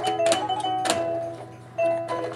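A light-up musical toy sea turtle playing a simple electronic melody, one held note stepping to the next, with a few sharp taps as a baby's hand hits the toy.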